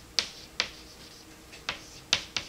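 Three short, sharp clicks or taps, a little apart, over a faint steady hum.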